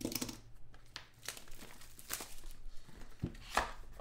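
Cardboard trading-card box being opened by hand: irregular scraping, tearing and tapping of the cardboard, with a sharper knock about three and a half seconds in.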